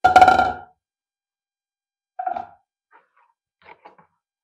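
Two short squeaks from a plastic mixing bowl being moved on the kitchen counter. The first is loud and comes right at the start; the second is weaker and comes about two seconds later. A few faint clicks of handling follow.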